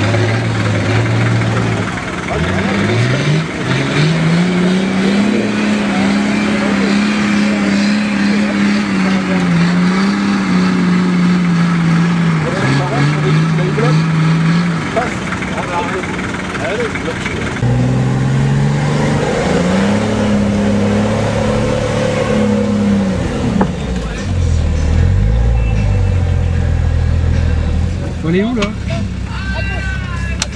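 A 4x4's engine revving hard under load as the vehicle climbs a steep mud slope: the revs rise about two seconds in and are held high for over ten seconds, drop, climb again and are held a few seconds more, then fall back to a lower, slower run near the end.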